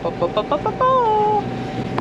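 A woman's high-pitched playful whooping: a few short laughing bursts, then one 'woo' that falls in pitch.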